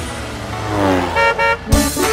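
Cartoon bus sound effect: a vehicle sound swelling as it goes by, then two short horn toots just over a second in, before the song's music comes back in near the end.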